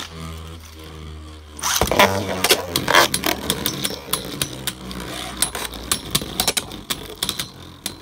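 Beyblade Burst tops in a plastic stadium: one top spins with a steady low hum, then a second top is launched in with a loud clatter just before two seconds in. After that the two tops collide over and over, giving a run of sharp clacking hits.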